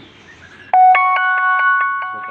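An electronic chime, like a doorbell or ringtone tune, starts suddenly about two-thirds of a second in: a run of rising notes that pile up and ring on together with a fast flutter, fading toward the end.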